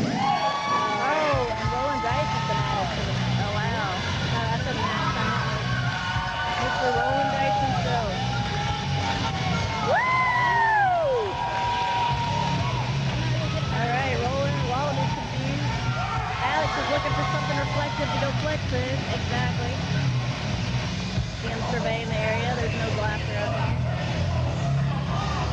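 Indistinct voices echoing in a hall, with shouts and drawn-out calls that rise and fall, over a steady low hum.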